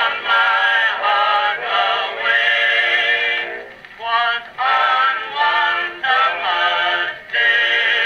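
Male vocal quintet singing from an Edison Blue Amberol cylinder playing on a cabinet Edison phonograph, in phrases with short breaks between them. The old acoustic recording has no high end above about 5 kHz.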